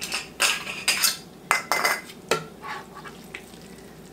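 A spoon scooping and scraping thick, wet relish in a large metal stockpot, with a quick run of knocks and clinks against the pot in the first two seconds or so, then quieter handling with a couple of faint clicks.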